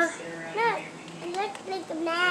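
A young child's voice: a few short, high-pitched sounds, mostly speech.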